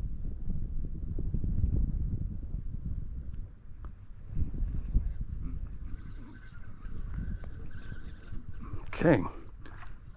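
Low, uneven rumbling and knocking of handling noise on a body-worn microphone. From about six seconds in, a thin steady whir runs for two to three seconds as line is reeled in on a hooked fish that is pulling against the rod. A short spoken 'Okay' comes near the end.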